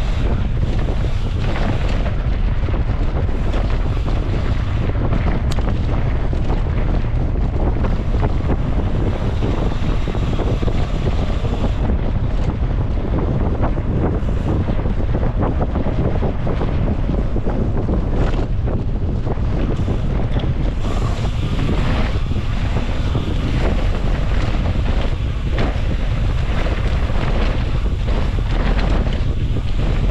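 Wind buffeting the camera microphone of a mountain bike moving at speed, a heavy steady rumble, with tyres crunching over loose gravel and dirt and short rattles from the bike on the rough trail.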